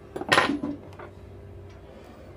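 Small metal hand tools, tweezers among them, clattering against a wooden workbench as they are picked up and handled: a quick rattle of clicks about half a second in, then a single lighter click about a second in.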